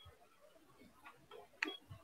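Faint clicks against quiet room tone: a few light clicks, the sharpest about one and a half seconds in, then a low thump at the end.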